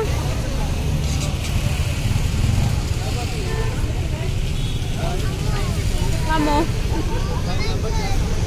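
Roadside traffic and motorcycle engines making a steady low rumble, with snatches of people talking nearby.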